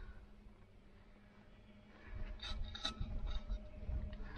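Crampon footsteps crunching on snow. After about two seconds they join a low rumble of wind on the microphone and a few short clicks and scrapes of climbing gear.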